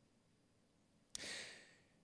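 Near silence, then about a second in one short breath from a man close to the microphone, starting sharply and fading within half a second.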